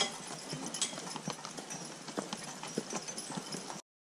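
Hoofbeats of a pair of Percheron draft horses walking on a wet dirt trail: irregular hoof strikes that cut off suddenly just before the end.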